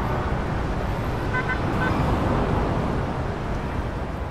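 City traffic ambience: a steady rumble of road traffic, with a brief car-horn toot about a second and a half in.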